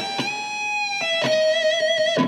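Electric guitar playing a lead phrase: two held notes, the second a little lower than the first and given vibrato as it sustains.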